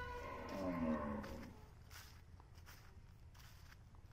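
A cow mooing once: a single long call, held steady and then falling in pitch, fading out about a second and a half in.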